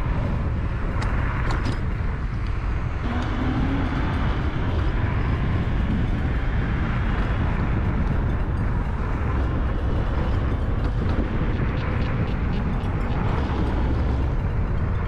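Wind buffeting a GoPro Hero 8 Black's built-in microphone, mixed with road noise, while the camera rides mounted on a moving electric scooter: a steady low rumble with a few faint clicks.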